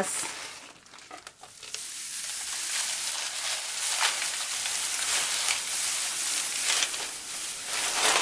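Shredded plastic Easter grass crinkling and rustling as handfuls are pulled out and fluffed by hand. The crackle is light at first and turns dense and steady about two seconds in.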